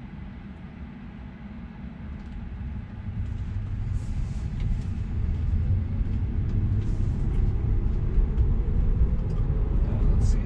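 Road and tyre noise inside a Tesla Model 3's cabin, growing steadily louder as the car pulls away from a stop and gathers speed, with a faint rising whine in the second half.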